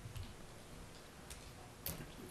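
Quiet meeting-room tone with a few faint, sharp clicks, the clearest one near the end.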